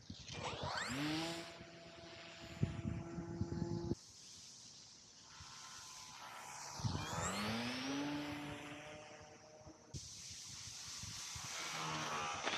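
Electric motor and propeller of an E-flite Turbo Timber Evolution RC plane flying past low: a buzzing drone whose pitch rises and then holds as the throttle opens, twice. The sound breaks off abruptly about four seconds in and again about ten seconds in.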